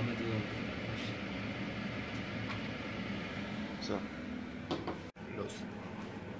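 A steady low hum of kitchen background noise, with a few short spoken words near the end.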